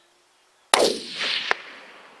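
A single rifle shot from a Tikka T3 in 6.5×55, sudden and loud about three-quarters of a second in, its tail fading away over the next second. A short sharp click follows about three-quarters of a second after the shot.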